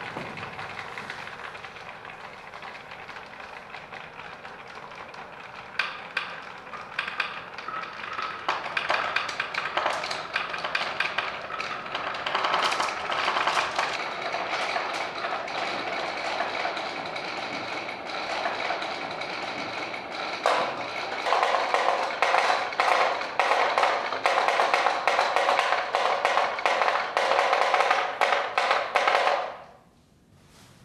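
Many glass marbles rolling and clattering through a plywood marble run's wavy channels: a dense, continuous rattle of small knocks against the wooden walls. It gets louder about twenty seconds in and stops abruptly near the end.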